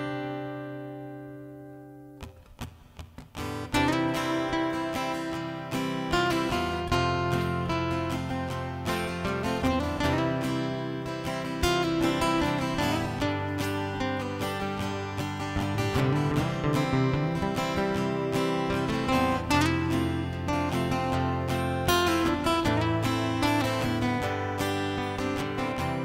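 Acoustic-electric guitar: a strummed chord rings out and fades over the first two seconds, a few short plucks follow, then from about four seconds in a steady picked-and-strummed instrumental intro to a song.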